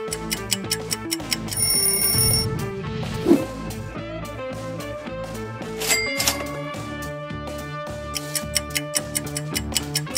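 Quiz background music with rapid clock-like ticking from the countdown timer. In the middle the ticking stops for transition effects: a ringing tone of about a second near the start, a sharp hit a little after, and a chime-like hit about six seconds in. The ticking returns near the end.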